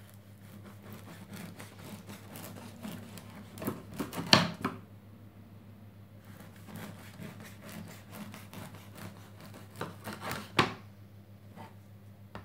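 Bread knife sawing through a crusty sourdough loaf in quick rasping strokes, with two sharper knocks, the loudest about four seconds in and another about ten and a half seconds in.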